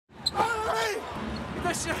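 Television commentators talking and laughing over arena crowd noise, with a basketball bouncing on the hardwood court. A short high squeak comes near the start.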